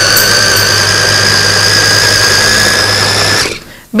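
Ariete Choppi electric mini chopper running: a steady high motor whine with its blades spinning in the bowl. It cuts off about three and a half seconds in.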